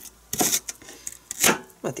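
Kitchen knife slicing an onion on a plastic cutting board, two sharp cutting strokes.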